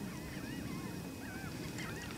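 Faint bird calls: many short, wavy chirps and whistles overlapping throughout.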